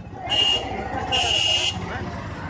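Two blasts of a high, buzzing electronic tone, a short one and then a longer one, over voices.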